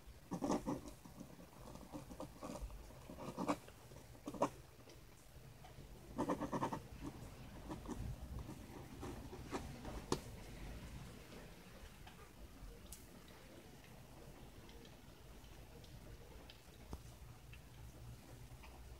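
Faint scratching of a ballpoint pen writing on paper, with scattered knocks and rustles from handling, loudest in a few short bursts in the first half.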